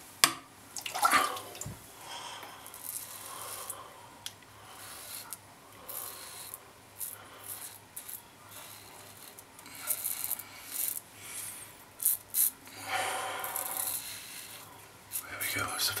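Merkur Progress adjustable safety razor, set to its top setting of five, scraping through two days' stubble on a first pass with the grain: short, irregular scraping strokes.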